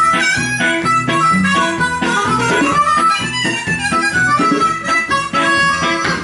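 Harmonica solo played live, with notes bending and sliding, over a strummed electric guitar accompaniment.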